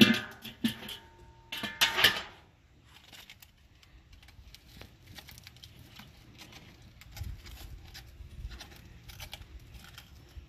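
Handling noises at a kettle grill's steel cooking grate: sharp metal clinks and aluminium foil crinkling as a foil-wrapped temperature probe is set in place, loudest in two bursts within the first two seconds, then only faint small clicks.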